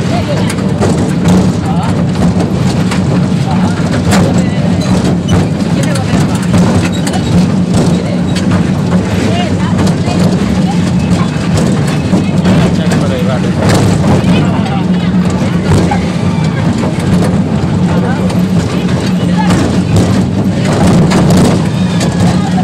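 A miniature zoo train running, heard from inside its carriage: a steady low engine drone with frequent clattering knocks from the carriage, and people's voices chattering over it.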